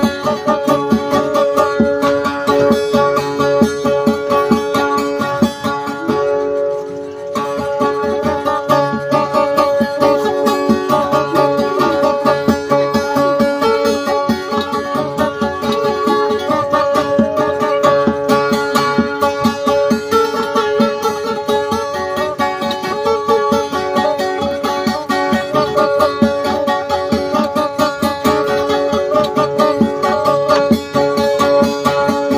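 Acoustic guitar played instrumentally, with fast steady picking over a few notes left ringing throughout. It thins briefly about six seconds in.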